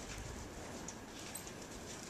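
A horse walking on sandy arena footing, its hooves landing in a few soft, irregular footfalls.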